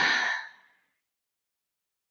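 The end of a woman's long, level-pitched 'yeah' trailing off into a breathy sigh about half a second in, then dead silence.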